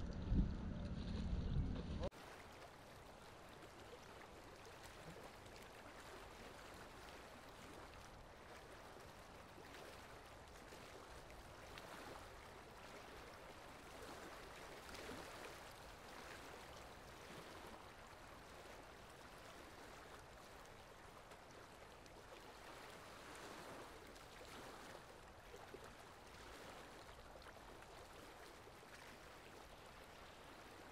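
Wind buffeting the microphone for the first two seconds and cutting off suddenly, followed by a faint, steady wash of river water with light swells of splashing.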